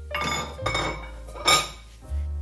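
White ceramic bowls clinking and knocking as they are handled and set down on a stone countertop: a few ringing knocks, the loudest about one and a half seconds in.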